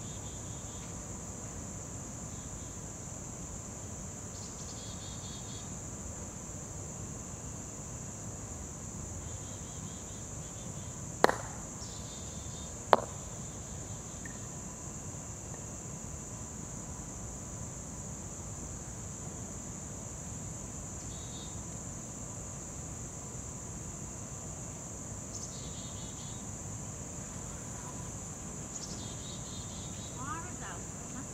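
Steady high insect trill, typical of crickets, with faint intermittent chirps. About eleven seconds in, a sharp click of a croquet mallet striking a ball, then a second sharp click about a second and a half later as the rolling ball strikes another ball.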